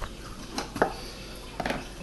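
A few light clicks and knocks as a clip is handled and fitted onto the side of a metal-edged carrying case, about one click every second.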